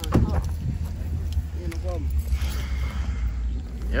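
Steady low rumble of wind on a phone microphone outdoors, with a few faint voices and a short click right at the start.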